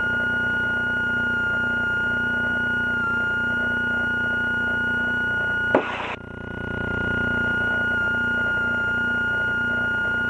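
Slingsby T67 Firefly's piston engine and propeller running steadily, heard as a drone with a steady high whine over it through the cockpit intercom. About six seconds in, a sharp click briefly cuts the sound, which then swells back over about a second.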